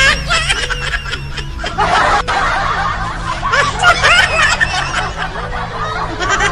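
People laughing and snickering in short bursts, over background music.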